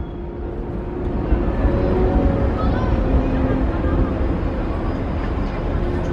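Indistinct voices of people talking over a steady low rumble, slowly growing louder; no firework bangs.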